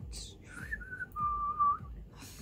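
A brief hiss, then a person whistling two pure notes, the second lower and a little longer than the first.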